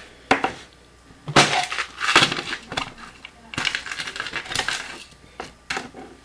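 Clicks and light clatter from a fingerboard's small metal trucks and parts being handled and worked off the deck. The sounds come in irregular bunches with short pauses between.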